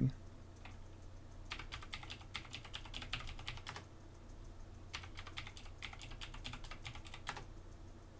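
Computer keyboard typing, quiet: two runs of keystrokes a little over two seconds each, with a pause between them. A password is being typed and then typed again to verify it.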